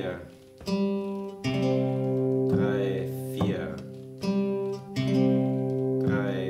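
Steel-string acoustic guitar, capoed at the third fret, fingerpicked slowly over an A minor chord shape. Single notes and chords are plucked about once a second and left to ring, the chords rolled thumb, index, middle rather than struck together.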